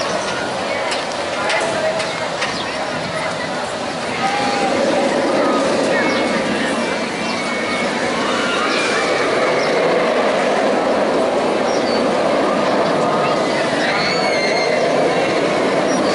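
Steel roller coaster train running along its track, a steady rumble that grows louder about four seconds in, with people's voices around it.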